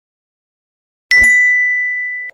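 A single notification-bell chime sound effect, a ding struck once about a second in, one clear high tone ringing on and slowly fading.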